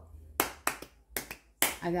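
A few sharp hand claps, irregularly spaced over the first second and a half, in a small room.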